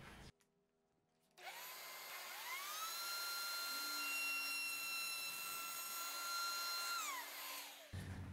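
A table-mounted router starts about a second and a half in, its whine rising as the motor spins up, then runs steadily while a pine board is fed into a cove bit. It winds down with a falling whine near the end.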